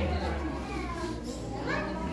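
Young children's voices chattering in a classroom, over a steady low hum.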